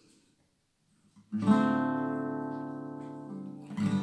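Acoustic guitar, the opening chord of a song strummed about a second in and left to ring out, slowly fading, with a second strum just before the end.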